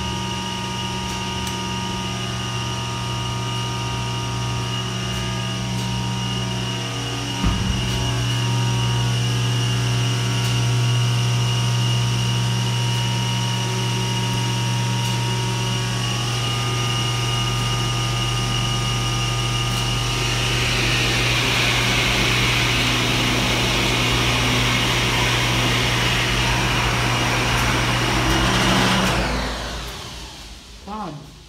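Dover hydraulic elevator's pump motor running with a steady electric hum. A sharp clunk about seven seconds in, after which it runs a little louder. A hiss joins about two-thirds of the way through, and the motor cuts off just before the end.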